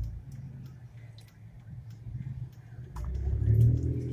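Car engine running, heard from inside the cabin as a low rumble that grows louder about three seconds in, as if revved or pulling away. Faint clicks sound over it as water is drunk from a plastic gallon jug.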